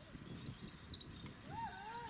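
Hooves of a yoked pair of Ongole bulls and the scrape of the stone block they drag over dusty dirt, with men's footsteps alongside. A bird chirps about a second in, and a long, high, wavering call begins near the end.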